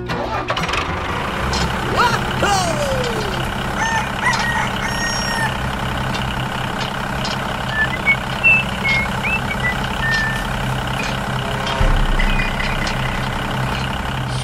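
Tractor engine running steadily at an even speed. A falling glide comes about two seconds in, and a few short high chirps sit over the engine in the middle.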